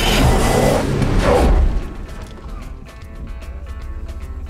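An SUV's engine running hard under load, its tires spinning and throwing dirt as it struggles to keep moving, for about the first two seconds. It then drops away, leaving background music.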